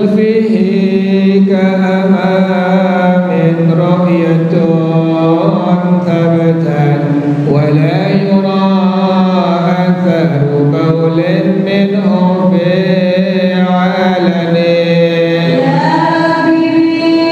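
A man's voice chanting a devotional melody into a microphone, in long held notes that glide slowly up and down.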